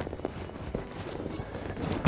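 Soft rustling and a few light clicks as a leather game bag is handled: a duck is pushed into the bag's net and the leather flap is closed. Low wind noise runs underneath.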